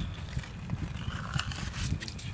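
Slush and ice being scooped and scraped out of an ice-fishing hole with a small plastic ice scoop: soft crunching and scraping with a few short clicks.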